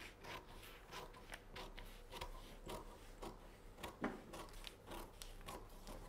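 Scissors cutting through a paper dress pattern: a run of faint snips, two or three a second, with the paper rustling as it is moved.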